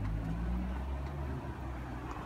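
Outdoor street background noise: a steady low rumble.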